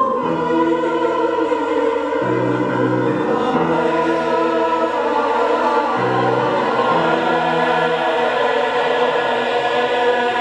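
Mixed-voice choir singing in harmony with piano accompaniment, the low held chords beneath changing every couple of seconds.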